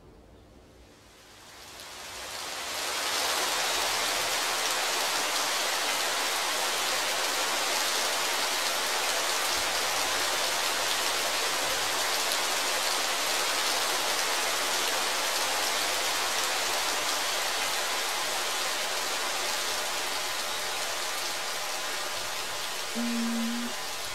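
Waterfall: a steady rush of falling water that fades in over the first few seconds.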